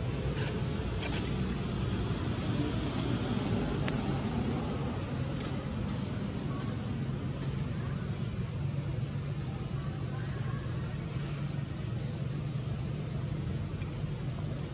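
Steady low rumble of outdoor background noise, with a few faint clicks.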